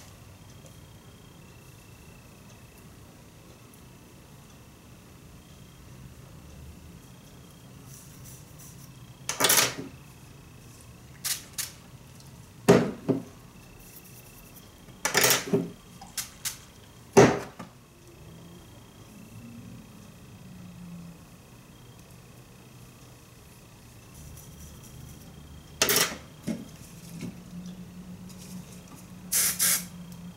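Hair spray sprayed at the roots of teased hair in short hissing bursts, about eight sprays in all, some in quick pairs, starting about nine seconds in.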